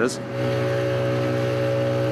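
Motorboat engine running steadily at speed with the hiss of water rushing past the hull: a constant hum with no change in pitch.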